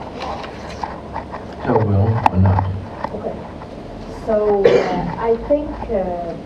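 Brief indistinct voice sounds in a lecture room: two short murmured utterances, about two seconds in and again near the end, with a few light clicks between them.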